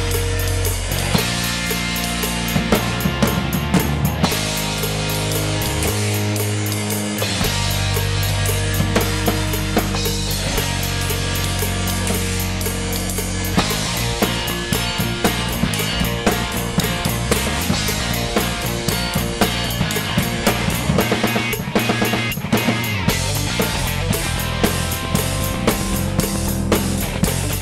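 Rock drum kit played hard, with bass drum, snare and cymbal hits in a dense stream, along with a rock song's backing of held bass notes and chords.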